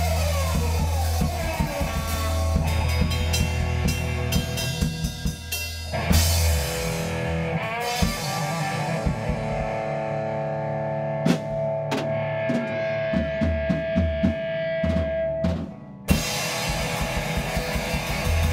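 Instrumental rock band passage: electric guitar, bass and drum kit playing. A cymbal crash comes about six seconds in, a long held note runs through the middle, and the music drops back briefly before another crash near the end.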